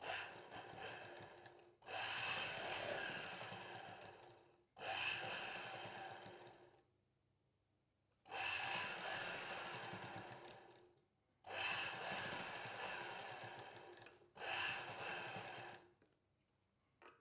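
Black domestic sewing machine stitching gold braid trim onto a blouse neckline, run in six short bursts of a few seconds each with brief pauses between. Each run starts sharply and fades away.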